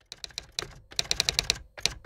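Computer keyboard typing, a string of sharp key clicks, sparse at first and then a fast run about halfway through.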